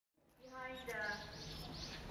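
Faint garden ambience fading in: a person's voice in the background and a small bird giving a few short chirps in quick succession.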